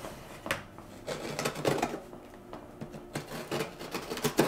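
A utility knife cutting through packing tape on a cardboard shipping box, in short irregular scratching and scraping strokes with a few clicks.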